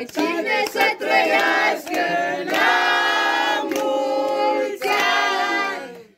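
A small group of people singing a birthday song together, with hand clapping.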